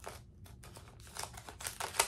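Packaging pouch crinkling faintly as a bracelet is worked out of it, nearly quiet at first and picking up about a second in.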